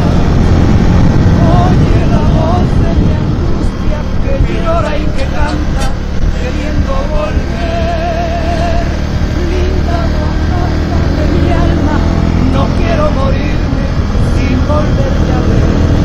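Zontes V1 350 motorcycle's single-cylinder engine running steadily at cruising speed, with wind rushing over the microphone. Faint wavering tones come through in the middle.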